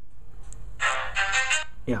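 A brief snatch of a song, under a second long and a little past the middle, played through the LG GD510 Pop phone's small built-in loudspeaker. The speaker is loud but sounds a bit rattly.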